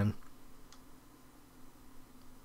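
Very faint background with a low steady hum and one faint click about two-thirds of a second in; no concrete breaking is heard.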